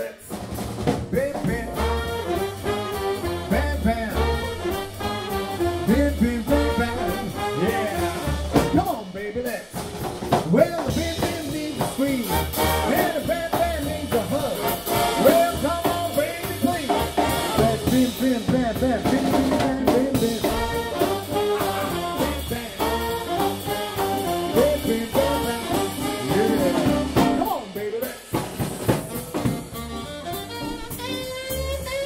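Live big band playing swing, with saxophones, brass and drum kit, and a male vocalist singing over it. The band stops briefly about nine and a half seconds in and again near the end.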